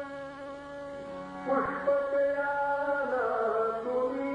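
Live Marathi devotional song with violin and tabla accompaniment: long held notes over a steady drone, a brief swell about one and a half seconds in, and a note sliding down in the last second.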